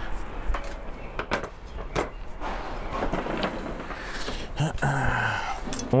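Handling sounds: several sharp knocks and clicks as a ceramic plate and a tablet are set down on a wooden table, over a steady background hiss, with a brief voiced hum near the end.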